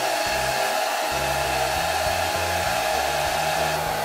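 Handheld hair dryer running steadily: a constant rush of warm air with a steady whine, used to warm freshly mixed rod-coating resin and drive out its bubbles.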